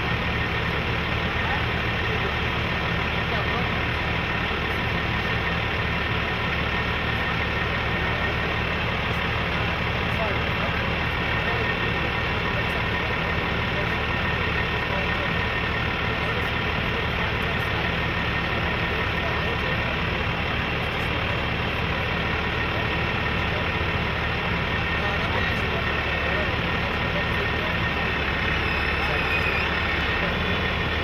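Heavy rotator tow truck's diesel engine running at a steady idle while it drives the boom's hydraulics, slowly swinging a suspended loaded cement mixer; an even, unchanging engine note with faint steady tones above it.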